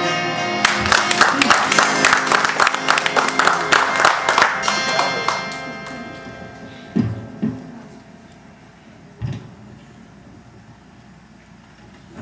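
Ghazal accompaniment of tabla, harmonium and plucked strings playing a fast run of strokes over held harmonium notes, which dies away about halfway through. Two deep tabla bass strokes follow, each gliding down in pitch.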